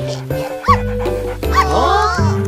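A cartoon puppy yipping twice, about a second apart, over steady background music.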